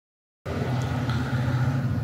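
A steady low rumble that starts suddenly about half a second in, after silence.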